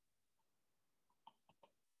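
Near silence, with a few faint ticks of a stylus tapping on a tablet screen during handwriting.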